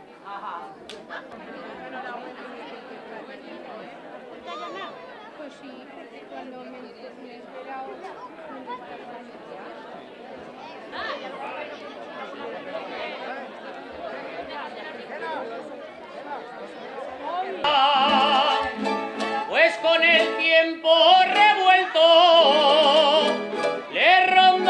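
A crowd of people chatting. About eighteen seconds in, a loud jota song starts: a singer with strong vibrato over plucked string instruments.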